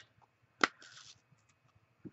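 A single sharp click from a handheld sponge-dauber applicator being handled, followed by a brief soft rustle and a few faint ticks.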